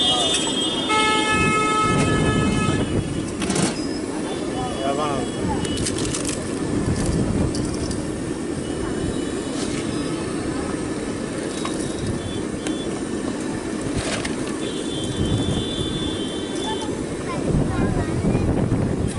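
Street background of steady traffic and crowd noise, with a vehicle horn sounding for about two seconds near the start and a fainter horn later on, and a few sharp clicks.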